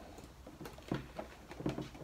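Faint scraping and tapping of a power cable being forced through a snug four-millimetre hole drilled in a plastic tackle pod, a few short strokes spread across two seconds, over a low steady hum.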